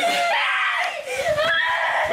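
Young children screaming and crying in distress, high-pitched cries that rise and fall in pitch.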